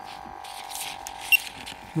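Dräger X-am Mark II sampling pump running with a steady electric hum, kicked on by the X-am 2500 monitor being pushed into it. Handling rustle of the unit and its clip, with one sharp click a little past halfway.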